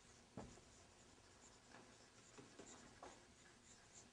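Faint strokes and squeaks of a marker writing on a whiteboard, with a light tap of the marker against the board about half a second in.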